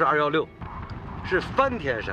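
A man speaking Chinese, with a short pause in the middle.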